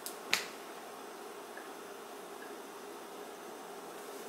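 A single sharp click about a third of a second in, then a faint steady hum of room tone.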